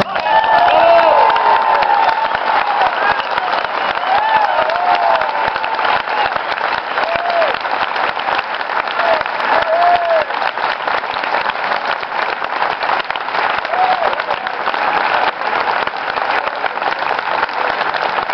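Audience applauding, with scattered cheering shouts over the clapping.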